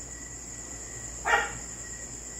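Steady high-pitched chirring of crickets, with one short bark about a second and a half in.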